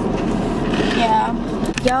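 A woman's voice saying a few words in a car cabin over a steady low hum, with a couple of clicks near the end.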